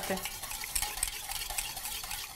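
A liquid sauce stirred briskly in a small stainless-steel bowl, the utensil swishing through it with faint clinks against the metal: the dressing has separated into layers and is being mixed back together.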